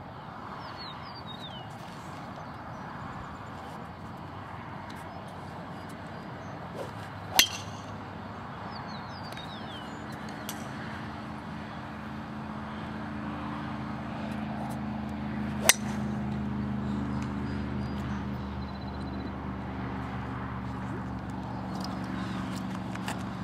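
Golf club striking a ball, two sharp cracks about eight seconds apart. Under them a steady engine hum grows louder from about halfway through, and a bird chirps briefly twice.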